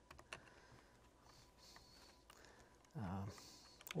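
Faint, scattered keystrokes on a computer keyboard.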